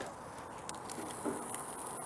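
Quiet steady hiss with a few faint light clicks of metal pizza tools, a steel plate and a peel, being handled at the oven.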